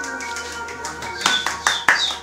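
Music playing, joined a little over a second in by hands clapping along in rhythm, sharp claps about four a second.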